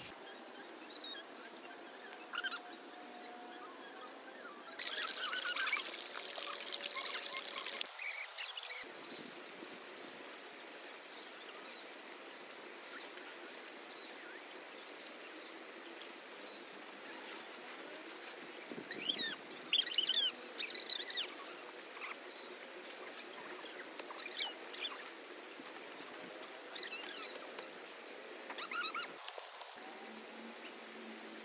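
Birds chirping over a steady faint background hiss. A dense burst of chirping about five seconds in lasts about three seconds, with another cluster of calls around twenty seconds in and scattered chirps elsewhere.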